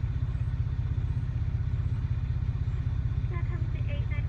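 A car engine idling, heard from inside the cabin as a steady low rumble.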